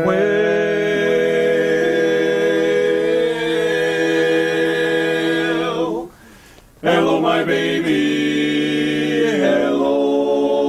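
Barbershop quartet of four men singing a cappella in close four-part harmony, holding long, steady chords. The singing stops for under a second about six seconds in, then picks up again, with the chord shifting near the end.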